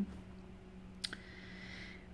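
A single short click about a second in, over quiet room tone with a steady low hum.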